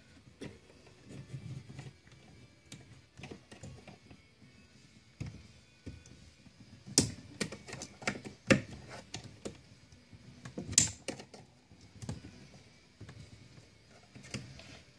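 Small metal clicks and taps as steel trigger pins are pushed into the holes of a stamped steel AK-pattern shotgun receiver and the spring-wire shepherd's crook is snapped over them to lock them in. The clicks come irregularly, with a few sharper ones in the second half.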